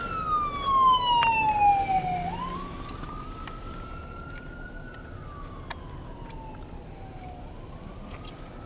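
Police SUV siren on a slow wail, its pitch falling and rising about once every five seconds, growing fainter over the first few seconds as the vehicle drives away.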